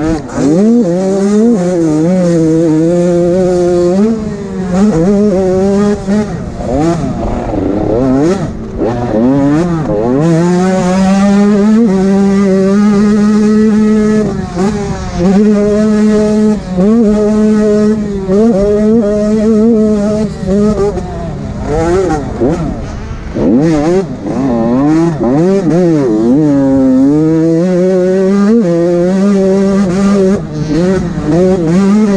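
85cc two-stroke motocross bike engine revving hard, its pitch climbing and falling off over and over as the rider works the throttle and shifts through the gears, heard up close from the rider's helmet camera.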